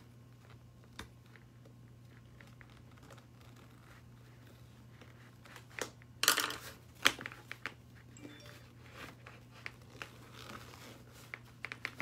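Stiff fabric of a handbag in progress rustling and crinkling as it is handled, with the loudest rustles about six and seven seconds in and small clicks in between, over a low steady hum.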